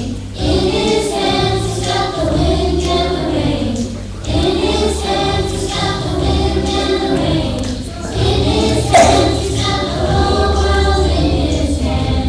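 A group of children singing together in unison over a steady low accompaniment, the phrases breaking every couple of seconds. There is a brief loud pop about nine seconds in.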